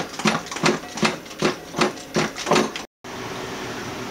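A water bottle on a CO2 line with a carbonation cap being shaken hard to carbonate it, sloshing in a rhythm of about three shakes a second. It cuts off abruptly near the end and gives way to a steady background noise.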